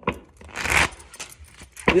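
Tarot cards being shuffled by hand: a few light clicks of the cards, then a brief riffle of cards flicking about half a second in.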